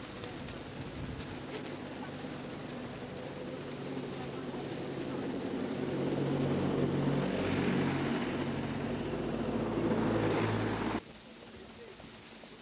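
A motor vehicle's engine running with a steady hum, growing louder over several seconds, then cutting off suddenly near the end.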